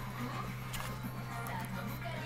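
Faint music from a television playing in the room, over a steady low hum.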